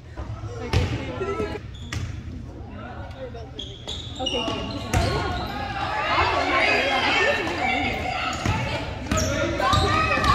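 A basketball thudding on a hardwood gym floor a few times, with many overlapping voices of players and spectators in a large gym. The voices get busier and louder about halfway through.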